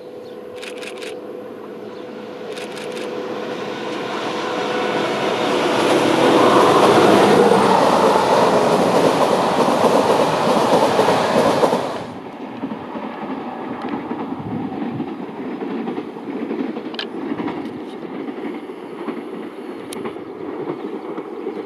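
ZSSK class 757 diesel locomotive hauling an express train toward and past the listener. Engine and running noise builds over the first several seconds, is loudest as the locomotive and coaches pass, and cuts off abruptly about twelve seconds in. A quieter, more distant train sound follows.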